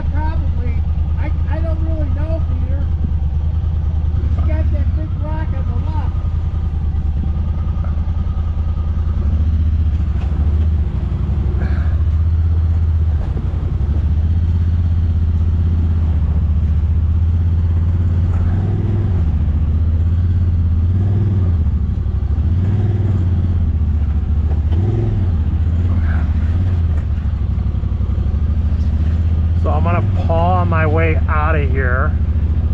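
Honda Talon X side-by-side's parallel-twin engine running at low, steady revs as the machine is driven slowly over a rough dirt trail, the engine note dipping and rising now and then. A single knock comes about twelve seconds in.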